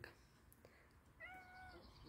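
A domestic cat meows once, faintly, with a short, steady call about a second in.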